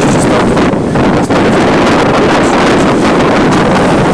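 Wind buffeting the camera's microphone: a loud, steady rushing noise with a deep rumble.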